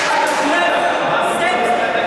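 Indistinct babble of many people talking at once in a large sports hall.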